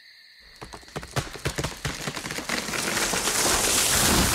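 Sound effect of a tree cracking and falling: a run of irregular wooden snaps that grows denser, over a rising rush of rustling branches that is loudest near the end.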